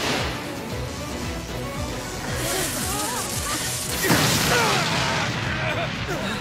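Anime battle sound effects over dramatic music: a rushing blast that builds and peaks in a loud hit about four seconds in.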